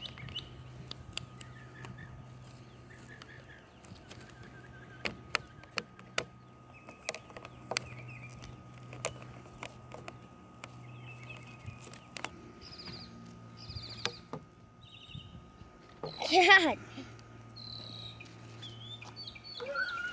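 Hard plastic parts of a Nerf Rival target stand clicking and knocking as they are handled and snapped together, with birds chirping now and then in the background. A short burst of voice, the loudest sound, comes about three-quarters of the way through.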